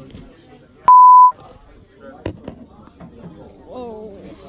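A loud censor bleep: one steady, pure high beep lasting under half a second, about a second in, that blanks out the audio beneath it. Faint voices and a single sharp click follow.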